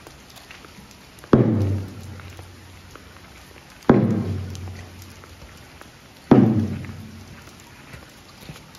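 A large Japanese shrine drum (taiko) struck three times, slowly and about two and a half seconds apart, each stroke a deep boom that dies away over about a second.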